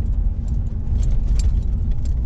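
Road and engine noise inside a moving car's cabin: a steady low rumble with a few faint clicks.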